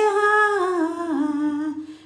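A woman's voice singing a hymn unaccompanied, drawing out one long held note that steps down in pitch a few times and fades out just before the end.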